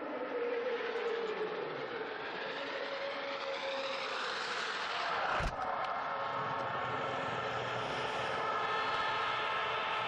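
Ski jumper's skis running in the icy inrun tracks, a hiss that rises in pitch as he accelerates and ends in a sharp snap at takeoff about five and a half seconds in. Steady horn-like tones from the crowd run underneath.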